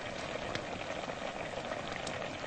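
Hot pot simmering over a fire: a steady bubbling hiss with faint pops.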